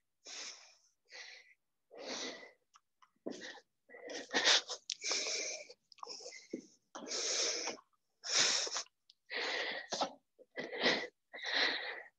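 Hard, rapid breathing of a woman exerting herself in step-up exercise, each breath a short noisy rush, about one a second, growing louder after the first few seconds.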